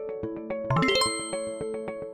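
Answer-reveal sound effect: a quick rising sweep that ends in a bright bell-like ding about a second in, ringing on and fading. Light plucked background music plays under it.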